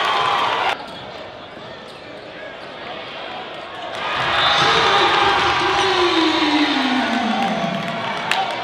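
Crowd noise in a school gym during a basketball game. Loud cheering cuts off abruptly under a second in, leaving quieter gym sound, and the crowd swells again about four seconds in with one long voice-like sound sliding down in pitch over the last three seconds.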